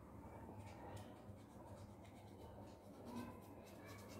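Faint scratching of a felt-tip marker rubbed over the raised face of a toy stamp to ink it, in short light strokes, against low room hum.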